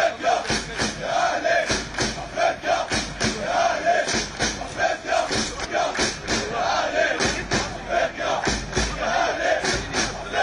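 Large crowd chanting in unison over a steady beat of about three sharp strikes a second.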